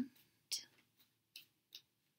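A tarot deck being shuffled overhand: a soft swish of cards, then three faint clicks as cards drop onto the pile.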